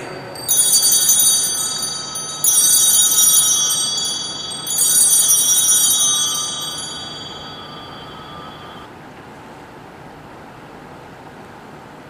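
Altar bells (Sanctus bells) rung three times, about two seconds apart, at the elevation of the chalice during the consecration. Each ring is a bright, high jingle that fades slowly, and the last dies away about nine seconds in.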